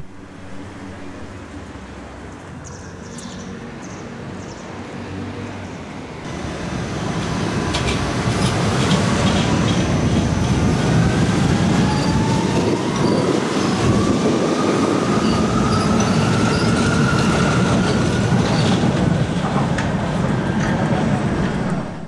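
Vienna U-Bahn line U4 metro train running past on the track below, its rumble building from about six seconds in and staying loud until it dies away at the very end. A clear whine rises steadily in pitch through the middle, the sound of the train's traction motors as it speeds up, with a few clicks of wheels over the track early in the loud part.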